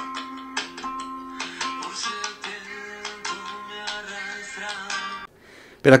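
Music from a live internet radio stream playing on an iPhone, quieter than the talk around it. It cuts off suddenly about five seconds in.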